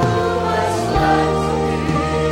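A large choir singing a gospel worship song in held notes, accompanied by a live band with electric guitars.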